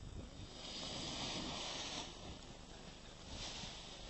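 Wind gusting over the microphone: a rushing noise that swells about half a second in and eases off after about two seconds, with a shorter gust near three and a half seconds.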